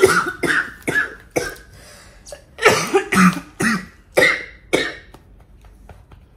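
A woman coughing in two fits of short coughs, the second starting about two and a half seconds in. It is the cough of someone several days into an illness.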